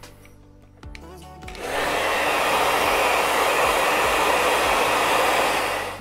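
Handheld hair dryer switched on, blowing steadily and loudly from about a second and a half in, then cutting off abruptly at the very end.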